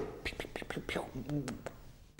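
A man's soft, breathy laughter with a few small mouth clicks, fading away.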